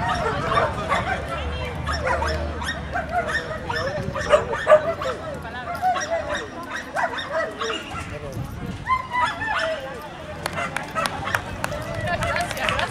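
Dogs barking and yipping repeatedly, mixed with people's voices.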